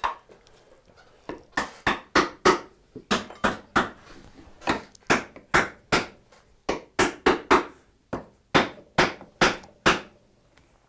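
Wooden mallet tapping an oak dovetail joint together, about twenty light, sharp knocks in quick short runs. The blows seat the pins further into the tails after waste was pared from between them.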